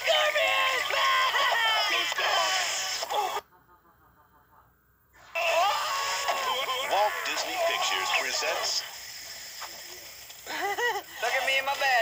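Animated-film trailer soundtrack: cartoon character voices and a laugh over background music, broken by a silent gap of about two seconds after the third second.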